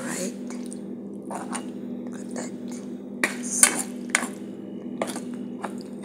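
A utensil stirring thick, creamy macaroni in white sauce in a pan, with scattered scrapes and knocks against the pan, the loudest about three and a half seconds in, over a steady low hum.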